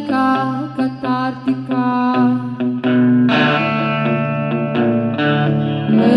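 Song with a woman singing long held notes over electric guitar run through effects, with low notes moving underneath.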